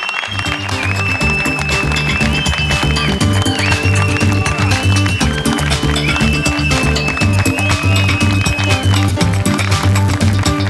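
Instrumental closing theme music starting abruptly: a steady pulsing bass line and drums under a high, held lead melody that slides between notes.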